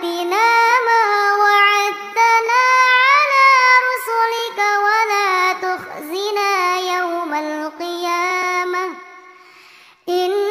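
A young girl's voice reciting the Quran in melodic tilawat style into a microphone. She sings long, high held notes with gliding ornaments between them, and the phrase fades out about nine seconds in.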